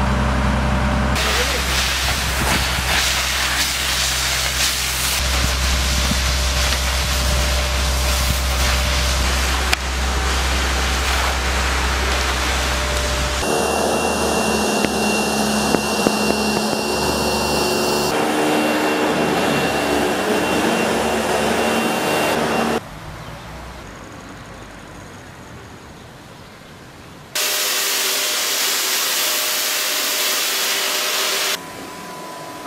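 Cleaning machinery in turn. First a fire engine runs with a deep rumble under the hiss of water spraying. From about halfway an upright commercial vacuum runs with a steady whine, and after a quieter stretch a disinfectant fogger hisses loudly near the end.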